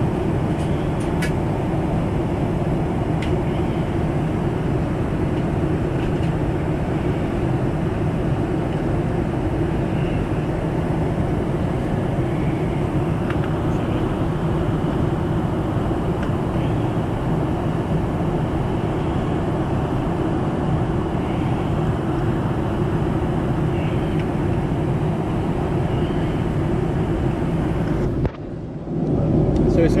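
Steady roar of a Boeing 747 upper-deck cabin in cruise, engine and airflow noise heaviest in the low range. It dips briefly about two seconds before the end.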